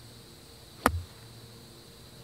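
A golf club striking the ball on a full swing from the fairway: one sharp click a little under a second in, with a short dull thud of the club through the turf.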